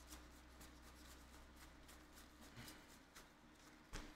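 Near silence, with faint scattered ticks of cards being thumbed through a hand-held deck.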